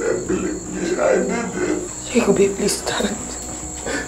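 A man wailing and sobbing in anguish: a run of rising and falling cries without clear words, over a steady high-pitched hum.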